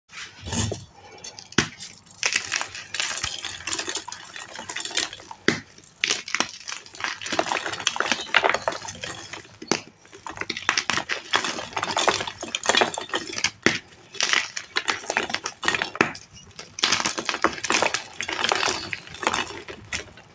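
Dyed, reformed (paste-made) gym chalk blocks being snapped and crumbled by hand: dry crunching in repeated bursts, with a few sharp snaps as pieces break off.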